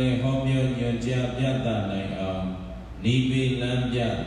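A man's voice chanting a Buddhist recitation over a microphone on long, nearly level notes, with a short break for breath about three seconds in.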